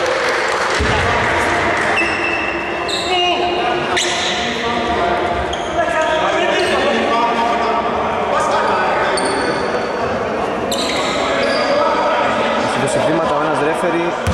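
Basketball bouncing on an indoor court amid several people's voices, echoing in a large hall, with short high squeaks now and then.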